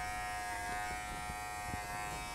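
Wahl Figura lithium-ion cordless horse clipper running with a steady, even hum as it trims the hair on a horse's ear.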